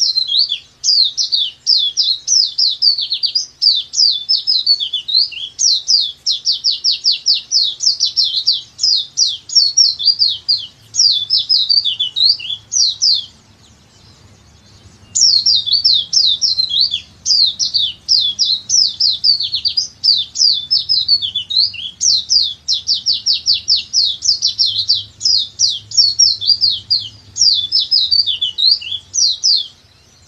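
Pleci dakbal white-eye singing its long, rapid 'nembak panjang' song: fast runs of high, thin chirps and trills. The song comes in two long bouts with a two-second pause about 13 seconds in, and the second bout repeats the pattern of the first.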